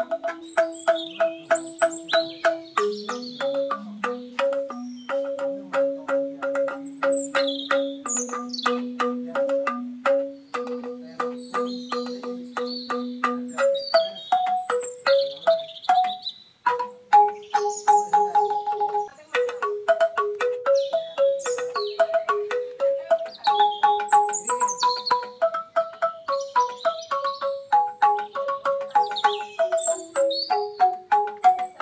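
Banyuwangi angklung music: tuned bamboo instruments struck with mallets in quick repeated notes, carrying a melody, with a lower line that drops out about halfway. Birds chirp high above the music.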